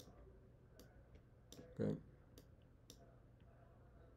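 A handful of faint, irregular clicks of a stylus tapping on a tablet screen while handwriting.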